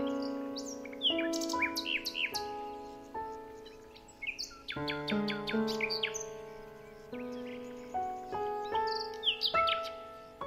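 Slow instrumental music of held notes, with birds chirping over it: a flurry of chirps about a second in, more around the middle, and again near the end.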